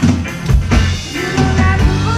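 Live rock band playing loudly: electric guitars, electric bass and a drum kit, with the drums keeping a steady beat under sustained guitar notes.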